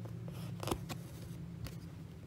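Hands working a cross-stitch piece on aida fabric: a brief rasp of thread or cloth with a sharp click in the middle, and a second click a second later.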